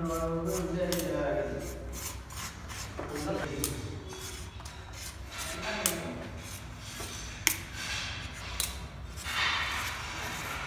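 Rubbing and scraping as wet gypsum filler is spread and smoothed by hand and with a metal putty knife along the joint of a plaster cornice strip. The strokes are short and irregular, with scattered clicks.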